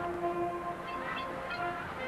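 Marching band playing a slow passage of sustained, held notes, with the chord shifting partway through.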